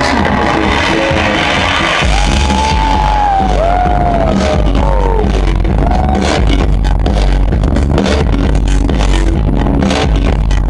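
Loud electronic dance music from a live DJ set, played over a big concert sound system and heard from within the crowd. A heavy bass comes in about two seconds in, with sliding high tones above it, and sharp beat hits drive the second half.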